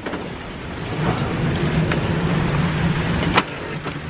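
Wind and sea noise aboard a sailing catamaran in strong wind and rough seas, with a steady low hum under it from about a second in. A sharp knock sounds near the end.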